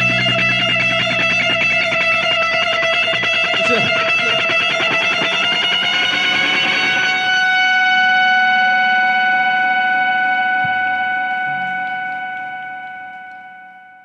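Distorted Stratocaster-style electric guitar holding one long ringing note as the song ends. The low end drops away a few seconds in, the pitch lifts slightly about halfway, and the note fades out near the end.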